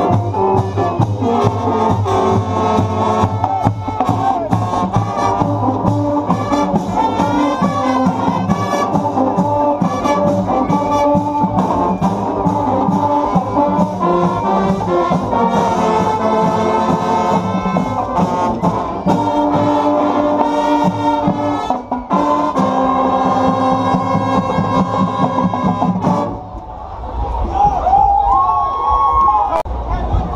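School marching band (banda marcial) playing: trumpets, euphoniums and other brass over a steady drum beat. The music stops abruptly near the end, leaving voices.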